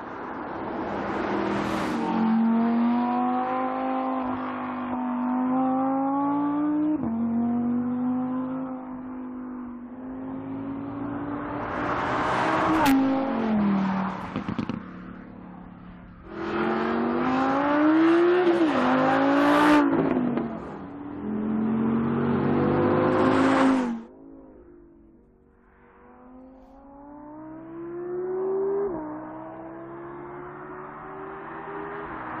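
Audi R8 V10 Spyder RWS's naturally aspirated V10 accelerating hard: the engine note climbs and drops back at each upshift, and around the middle the car passes by with a falling pitch. The sound breaks off abruptly twice between shots. Near the end the engine grows louder as the car approaches.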